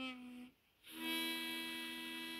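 Diatonic harmonica blown on hole one: a short note, then after a brief gap a longer held note.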